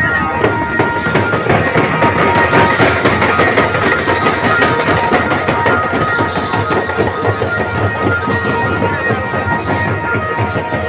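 Fast, dense drumming from a Muharram procession's drums, beaten continuously, with a steady high tone sounding over it.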